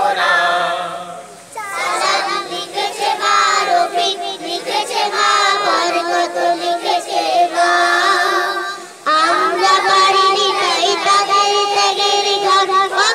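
A group of children and teenage boys singing a Bengali language-movement song together as a choir. There are short pauses between phrases, about a second and a half in and again at about nine seconds.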